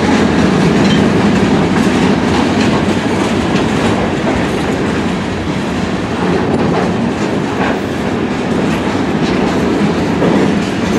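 Freight train of steel gondola cars rolling past: a steady rumble of wheels on rail with clattering over the rail joints and a few sharper metallic clicks.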